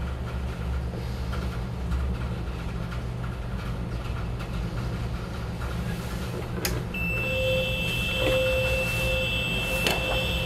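Over a steady low machinery hum, a fire alarm starts sounding about seven seconds in with a steady high-pitched tone and a lower pulsing tone. This is the SK smoke detector going into alarm only after being kept in smoke for several seconds, which the tester puts down to the panel's alarm verification.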